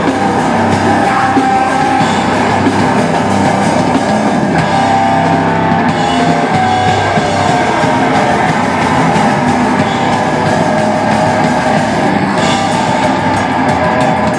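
Metallic hardcore band playing live and loud: distorted electric guitar, bass guitar and a drum kit.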